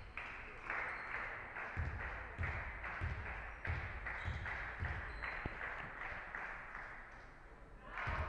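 Basketball dribbled on a hardwood gym floor, about seven bounces roughly half a second apart, as a player dribbles at the free-throw line before her shot.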